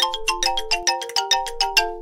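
Short musical scene-transition jingle: a fast, bright melody of short notes, about six or seven a second, ending on a held note that rings out just as the jingle finishes.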